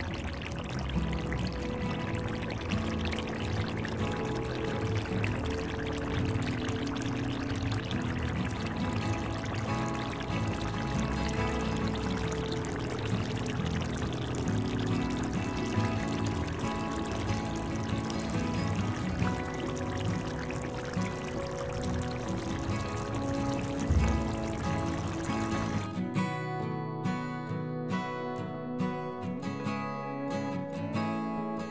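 Background music over a steady sizzle of tomato sauce frying in oil. Near the end the sizzle drops out and only the music remains.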